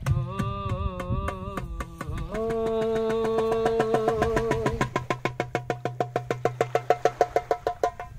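A man singing a Kannada song live to a darbuka: a phrase with wavering pitch, then a long held note from about two seconds in, while the darbuka keeps up a rapid run of strokes that grows denser toward the end of the song.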